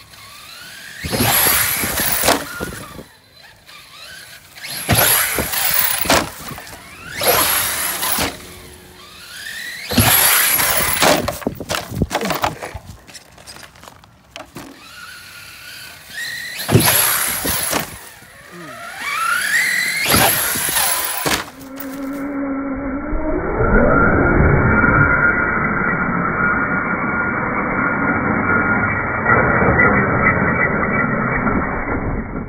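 Team Redcat TR-MT8E BE6S 1/8-scale brushless electric RC monster truck accelerating in about six short bursts, each a rising motor whine with tyre noise, as it drives at a jump ramp. From about 22 seconds in the sound turns muffled and lower, a continuous din with a slowly rising whine.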